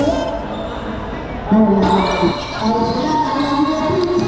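A basketball bouncing on a hardwood-style court during play, with players and spectators shouting over it in a large covered hall.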